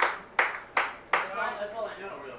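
Scattered hand claps dying away: four sharp claps less than half a second apart in the first second or so, then only voices.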